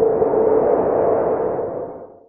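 Title-card transition sound effect: a sudden held tone over a noisy wash that fades out near the end.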